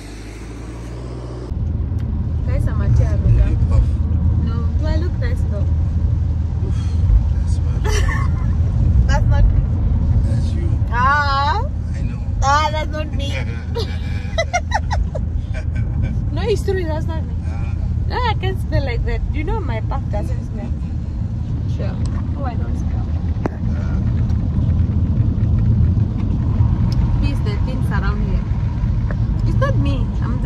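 Steady low rumble of a car driving on a wet road, heard from inside the cabin, with voices and laughter over it.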